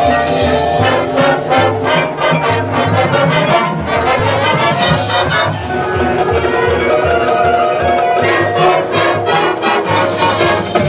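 Marching band playing: brass and woodwinds holding sustained chords over a steady drum beat.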